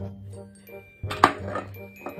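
Background music with chiming notes over steady bass, broken about a second in by a single sharp knock or clink.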